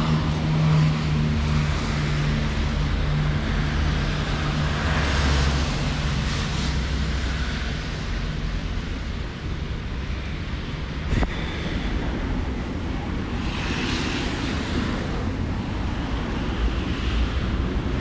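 Outdoor street noise with wind rumbling on the microphone and swelling twice. A steady low hum fades out about six seconds in, and a single sharp click comes near the middle.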